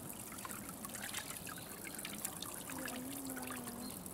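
Water trickling and splashing steadily as it pours into a bath pool, with many small droplet splashes. A short steady-pitched tone sounds briefly about three quarters of the way through.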